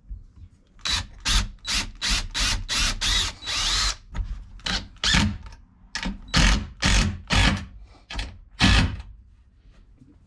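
Cordless drill pre-drilling bolt holes through a metal hinge into a wooden bunk board. It runs in about twenty short trigger bursts, with one longer run about three seconds in that rises in pitch.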